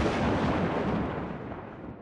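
Rumbling boom sound effect, fading steadily.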